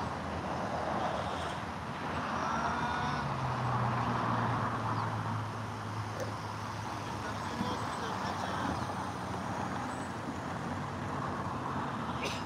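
Road traffic: cars going by, their tyre noise swelling and fading in waves, with a low engine hum from a vehicle in the middle.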